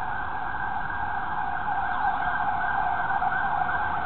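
A siren wailing faintly over steady city street noise.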